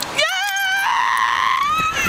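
A high-pitched voice holding long, wavering notes, rising a little near the end, as in singing.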